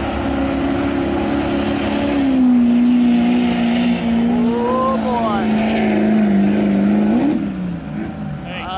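Diesel pickup truck engine held at high revs in a steady drone. The pitch sags a little about two seconds in, then rises briefly and drops near the end.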